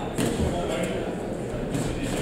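Shouting voices from the crowd and corners at a boxing bout in a large hall, with a few sharp slaps as gloved punches land in an exchange.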